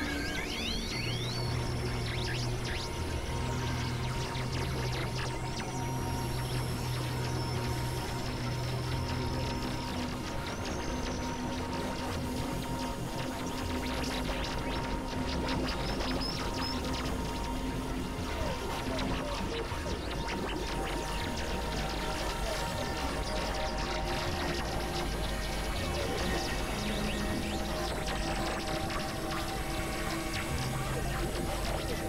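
Experimental electronic drone music from synthesizers: several long held tones over a dense, noisy texture with a low pulsing underneath. Thin high whistling glides come in near the start and again several seconds in.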